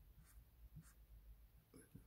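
Faint, short scratching strokes of a Sharpie Magnum broad-tip marker on paper as black ink is filled in.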